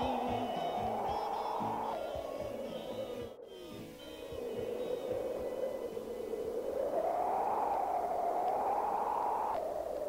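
Electronic whooshing sweep, a band of noise slowly rising and falling in pitch like wind, with the last notes of a guitar song dying away about two seconds in. It breaks off briefly about three and a half seconds in, swells again and cuts off suddenly near the end.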